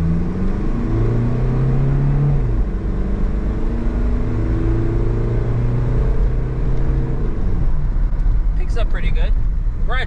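Mazda Bongo Friendee's diesel engine, heard from inside the cab, accelerating hard from low speed. The engine note climbs, drops about two and a half seconds in as the transmission changes up, climbs again, then falls away about seven seconds in.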